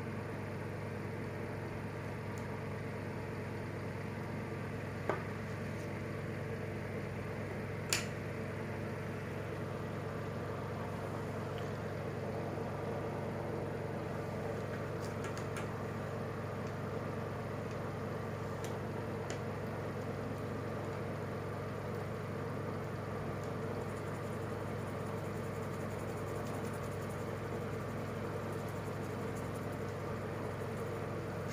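A steady machine hum holding several fixed tones at an even level, with two light clicks, about five and eight seconds in.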